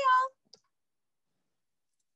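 A woman's voice finishing a spoken goodbye, then a single faint click about half a second in, followed by dead silence.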